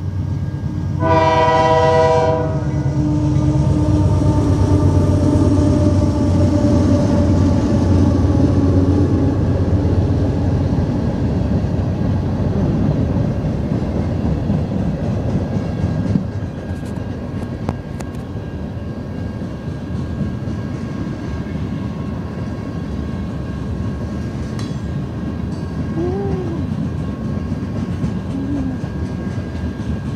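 Freight train led by GE AC4400CW diesel-electric locomotives: a short horn blast about a second in, then the locomotives' engines running loudly past, easing after about ten seconds into freight cars rolling by with wheel clatter and the odd clank.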